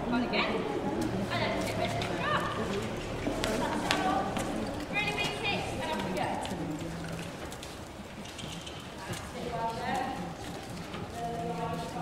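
Indistinct voices talking and calling, some high-pitched, over a pony's hooves walking.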